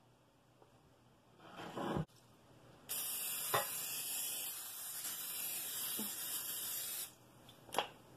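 Aerosol cooking spray hissing steadily into a metal loaf pan for about four seconds, greasing the pan. Just before it comes a short shuffling noise that ends in a knock.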